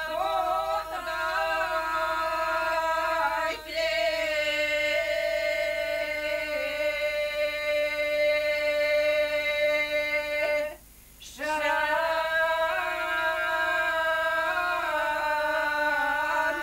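Women singing a traditional Bulgarian ritual folk song unaccompanied, in long held notes. There is a short breath break about three and a half seconds in, and the voices stop for a moment near the eleven-second mark before the next line.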